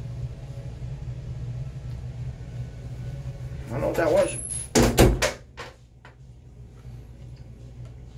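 A few sharp knocks and bumps about five seconds in, the loudest thing here, over a steady low hum, with a brief murmur of a voice just before them.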